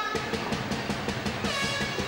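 Music from the arena stands during a free throw: a horn holds high notes over quick, even drum beats, with a second held horn note about one and a half seconds in.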